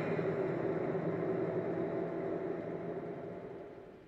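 Steady car engine and road hum, fading out gradually to silence.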